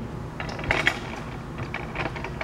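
A few light mechanical clicks and taps, clustered about half a second to a second in, over a steady low background.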